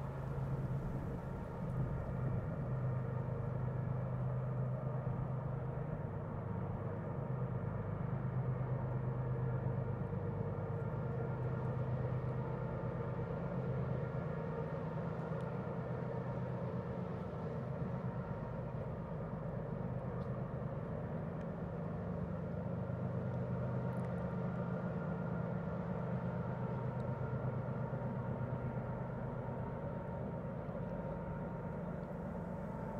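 Diesel freight locomotives running steadily, heard from far off: an even low engine drone with a few steady higher tones.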